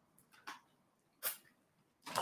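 Quiet mouth sounds of a person eating soft tofu off a wooden spoon, with one short, sharp slurp from licking the spoon a little past halfway.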